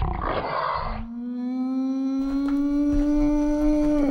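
Roar sound effect: about a second of harsh, noisy roar, then a long held growling tone that creeps slightly upward in pitch and slides down at the end.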